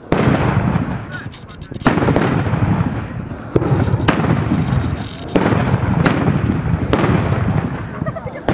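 Carbide shooting: milk churns charged with calcium carbide and water, lit one after another with a torch flame. About six loud bangs go off at irregular intervals, each dying away slowly over a second or so.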